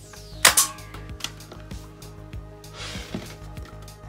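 Spring-loaded torpedo launcher of a Hasbro A-Wing toy starship firing: one sharp plastic snap about half a second in, followed by a few faint plastic clicks. Background music plays underneath.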